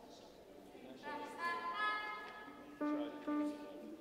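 Bowed string instrument playing slow sustained notes, starting about a second in, with two short lower notes near the end.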